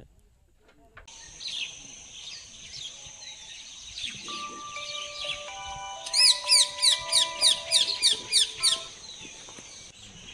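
Birds chirping over soft background music. Sustained music notes come in about four seconds in. About six seconds in, a run of loud descending chirps repeats three or four times a second for nearly three seconds.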